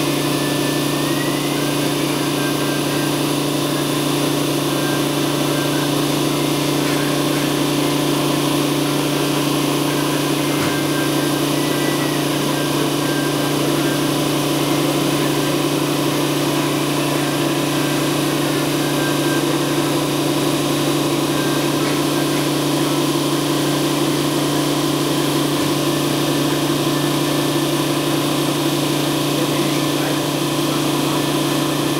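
Industrial vacuum press running mid-cycle: a steady, unchanging machine hum with a constant low drone.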